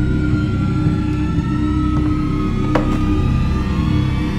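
Suspenseful drama-score background music: a sustained low drone under a thin high tone that slowly falls in pitch, with a single short click about three-quarters of the way through.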